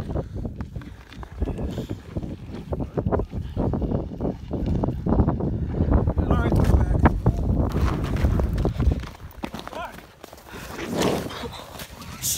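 Close rustling, knocking and crunching of snow and slush as a fishing line is hauled by hand up through an ice hole beside a tip-up, over a low rumble of handling noise on the microphone.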